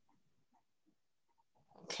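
Near silence with a few faint small ticks, then a woman's voice begins speaking just before the end.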